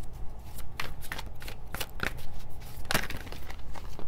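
Tarot cards being handled and shuffled: an irregular run of sharp card clicks and snaps.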